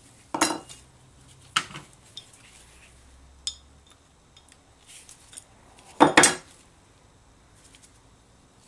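Metal parts of a disassembled Stanley No. 4 hand plane clinking and knocking as they are handled and set down on a newspaper-covered workbench: a few separate knocks, then the loudest clatter, a quick double one, about six seconds in.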